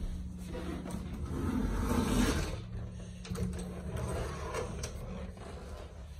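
Bifold closet door being pulled open, a scraping rumble along its track that peaks about two seconds in, followed by a few light clicks and knocks.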